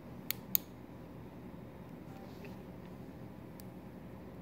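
Two sharp clicks about a quarter-second apart near the start as the switch of a handheld SeaQuest DSV V-PAL prop is worked to turn its light on, then a low steady room hum with one faint tick later on.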